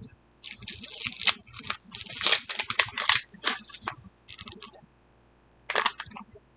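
Crinkly plastic-foil wrapper being peeled and torn off a Mini Brands surprise ball: irregular rustling and crackling in quick bursts, loudest a couple of seconds in, with one more short crinkle near the end.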